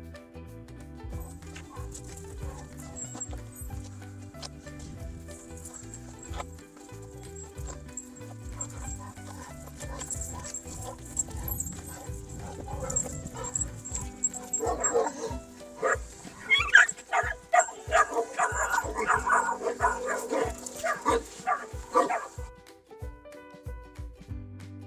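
Background music plays throughout. From a little past the middle, young Turkish livestock guardian dogs of the Kangal type bark in a dense run of barks for about eight seconds. The barking stops shortly before the end.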